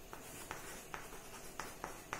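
Chalk writing on a chalkboard: faint, short scratches and taps of the chalk strokes, about two each second.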